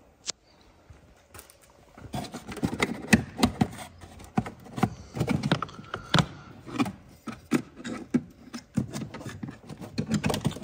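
Black plastic scuttle panel being pulled out from under the windscreen wipers. One sharp click near the start, then from about two seconds in a string of irregular plastic knocks, creaks and scrapes as the panel slides free.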